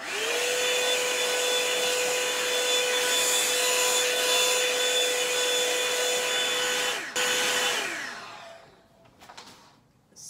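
A handheld hot-air brush blow dryer is switched on, its motor rising quickly to a steady whine over rushing air as it is worked through the hair. The sound dips briefly about seven seconds in. Soon after, the dryer is switched off and the whine falls in pitch as the motor winds down.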